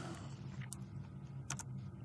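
Two single keystrokes on a computer keyboard, under a second apart, over a faint steady low hum.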